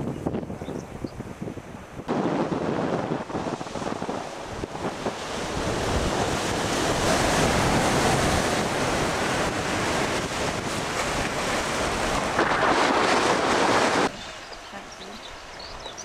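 Wind rushing over the microphone mixed with the sea and surf below a cliff, a rough, steady noise that starts abruptly about two seconds in and cuts off abruptly near the end.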